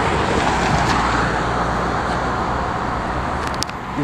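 A car passing on the road, its tyre and engine noise loudest at first and then slowly fading. A couple of light clicks near the end.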